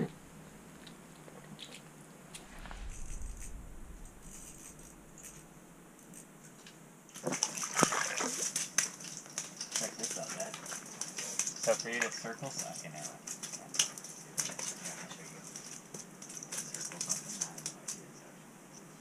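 A fish flopping on wet ice beside an ice-fishing hole: from about seven seconds in, a rapid, irregular run of wet slaps and splashes.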